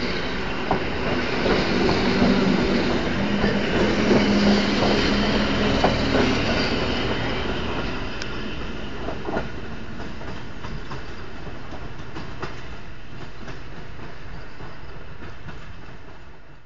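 EN57 electric multiple unit running on the rails, its wheels clicking over rail joints over a low steady hum. It is loudest for the first six seconds or so, then fades to a quieter rumble as the train moves away.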